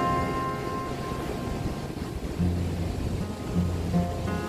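Acoustic guitar background music: a plucked chord rings out and fades, then low bass notes come in about halfway through.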